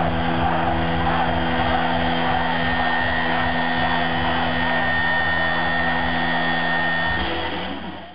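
Distorted electric guitar on an SG-style guitar, holding a loud sustained chord that rings steadily. The low notes shift about seven seconds in, and the sound fades out near the end.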